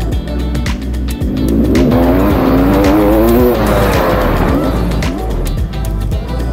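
Motocross bike engine revving up and holding under throttle for a few seconds in the middle, its pitch wavering as the throttle changes, over background music with a steady beat.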